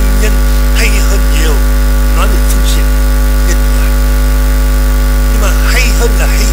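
Loud, steady electrical mains hum with many overtones, running without change and drowning out faint speech beneath it.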